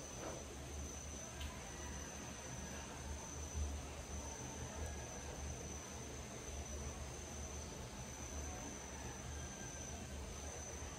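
Insects trilling in one steady high continuous tone, over a low rumble.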